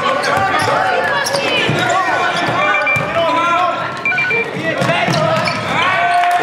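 A basketball being dribbled on a hardwood gym floor during a game, with spectators' and players' voices echoing in the gym.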